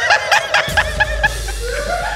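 Two men laughing hard in rapid, high-pitched bursts, with a longer drawn-out laugh near the end.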